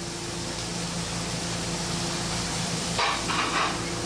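Slices of picanha sizzling steadily on a hot flat-top griddle, with a low steady hum underneath.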